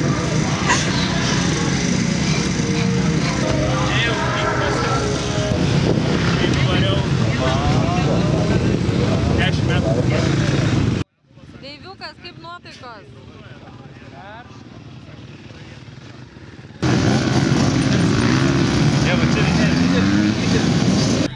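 Motocross bike engines running steadily under background voices. About halfway through the sound cuts off suddenly to a much quieter stretch with faint voices, and the engine noise returns shortly before the end.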